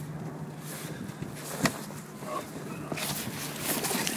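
Water splashing as a released musky thrashes at the surface beside the boat, the noise building over the last second or so. Under it runs a faint steady low hum, with a single sharp knock about one and a half seconds in.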